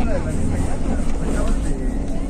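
Steady low rumble of a moving bus heard from inside the cabin: engine and road noise.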